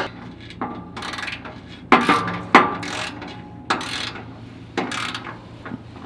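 A 17 mm ratchet wrench clicking in a series of short bursts about a second apart as it tightens a nut on the catalytic converter plate's bolt.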